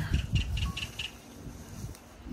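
Wind buffeting and handling noise on a phone microphone as the person holding it walks, with low thumps in the first second. A few faint high chirps come near the start, then it settles to a quiet outdoor hush.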